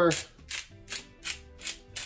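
Hand pepper grinder cracking black peppercorns, twisted in short ratcheting strokes about three a second.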